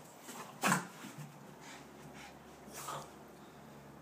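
Boston terrier making short breathy huffs while it jumps about, the loudest a little under a second in and another near three seconds.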